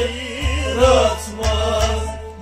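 A man singing a Kashmiri folk song into a microphone, his voice wavering in pitch, over instrumental accompaniment with a steady low drumbeat about twice a second.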